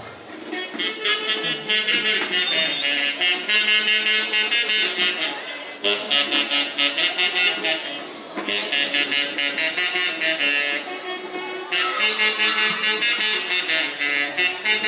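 Huaylarsh band playing live, saxophones carrying the melody over a quick, steady beat. The music drops back briefly twice near the middle.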